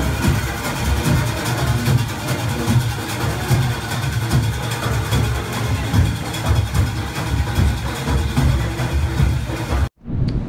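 Loud parade music with a dense, steady drum beat, typical of a Junkanoo street parade band. It cuts off suddenly near the end.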